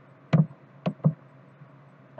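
Three sharp mouse clicks, the last two in quick succession, as a computer is operated.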